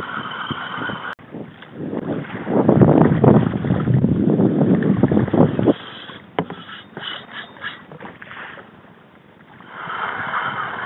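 Sea water splashing and sloshing against a kayak, loudest for about four seconds after a sudden cut a second in, followed by a few short knocks and then quieter water noise.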